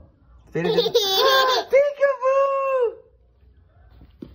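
A toddler's high-pitched voice in one long, drawn-out squeal. It starts about half a second in, holds for over two seconds and drops away near the end.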